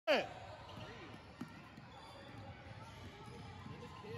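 Basketball game sounds in a gym: the ball bouncing on the court floor, with one sharper knock about a second and a half in. A short, loud sound falling in pitch comes right at the start.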